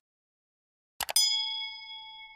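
Subscribe-button animation sound effect: two quick mouse clicks about a second in, then a notification-bell chime ringing and slowly fading.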